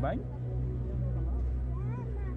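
Onboard ride soundtrack: a voice says "bye" with a sharply falling pitch sweep, over electronic music with a steady deep bass hum, and short gliding tones near the end.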